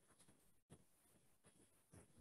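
Near silence: room tone with a couple of faint ticks.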